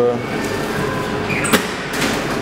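Steady mechanical hum of shop machinery, with a single sharp click about one and a half seconds in.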